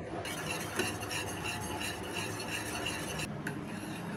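Wire whisk beating custard mix into boiling milk in an aluminium pan, its wires scraping and clinking against the pan in quick regular strokes. The sound breaks off abruptly a little over three seconds in.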